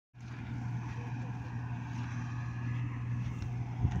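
Combine harvester's engine running steadily while it harvests wheat, a continuous low droning hum with a hiss above it.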